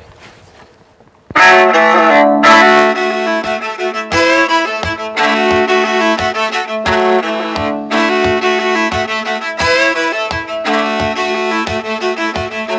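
Solo viola bowed as a fiddle tune, starting about a second in after a brief hush. A steady low note is held throughout under a brisk, rhythmic melody.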